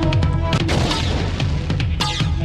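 Dramatic electronic television theme music for a programme bumper, with a heavy bass line, held synth tones and frequent sharp percussion hits.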